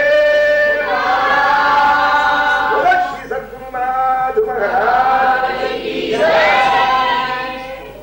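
A group of voices singing a devotional bhajan (Hari kirtan) together, drawing out long held notes, with a brief break between phrases about three seconds in, fading out near the end.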